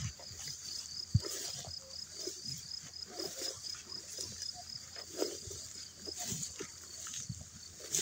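Footsteps swishing and rustling through tall meadow grass, with a faint high chirp repeating about four times a second throughout.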